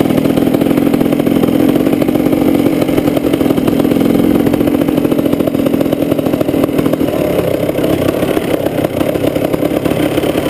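KTM EXC two-stroke dirt bike engine running on light, steady throttle while being ridden slowly, easing off a little in the last few seconds.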